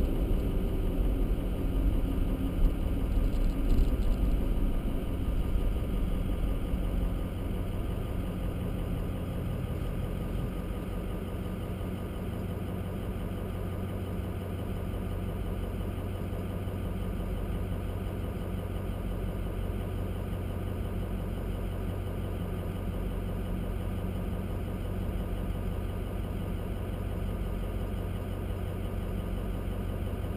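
Car engine and road rumble heard from inside the cabin while rolling, dying down over the first several seconds as the car comes to a stop, then the engine idling steadily for the rest of the time.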